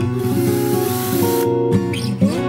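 Acoustic guitar background music. A burst of hiss runs for about a second and a half near the start, then cuts off sharply.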